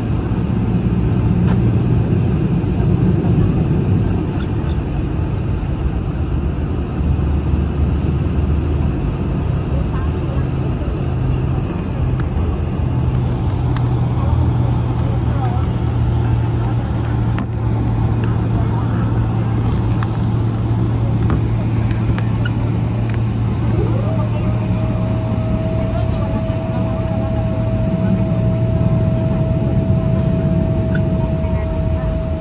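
Cabin noise of a Boeing 777-300ER jet airliner moving on the ground before takeoff: a steady low rumble from the engines and rolling gear. Near the end a whine sweeps quickly upward and then holds at one steady pitch.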